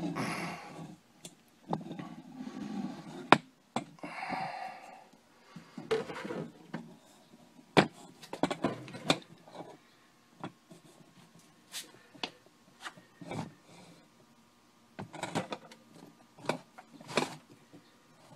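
Camera handling noise: scattered clicks and knocks, with a few short rustles in the first five seconds, as the camera is picked up and moved in close.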